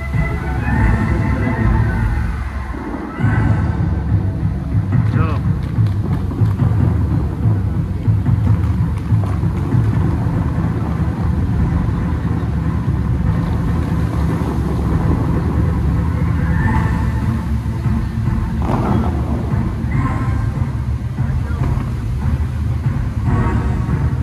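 Music from a dancing-fountain show playing loudly over loudspeakers, with voices at times, over a steady low rumble.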